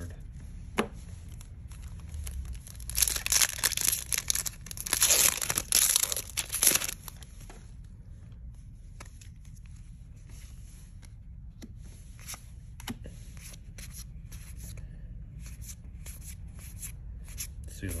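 Foil wrapper of a Magic: The Gathering Zendikar Rising set booster pack torn open and crinkled, in two loud rustling bursts about three and five seconds in. After that, quiet flicks and ticks of the pack's cards being handled one after another.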